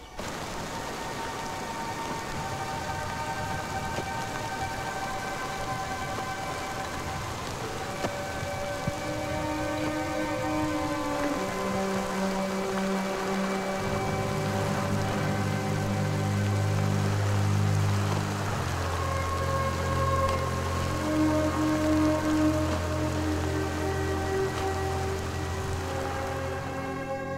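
Steady rain on a film soundtrack, with a score of long held notes over it that slowly builds; deep low notes come in about halfway through.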